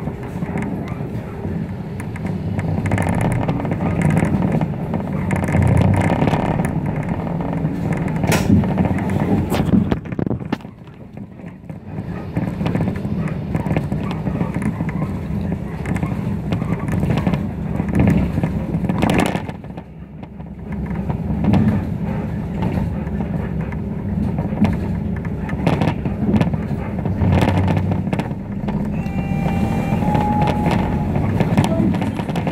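City bus driving in traffic, heard from inside: steady engine and road noise with scattered rattles, quietening briefly twice. A short electronic tone sounds near the end.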